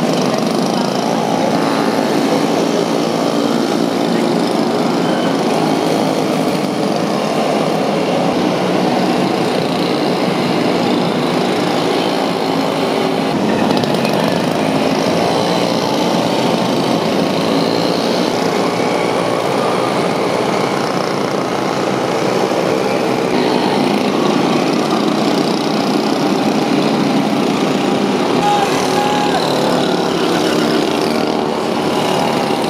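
The small engines of a string of dernies, motorised pacing bikes, running steadily as they lead racing cyclists past one after another.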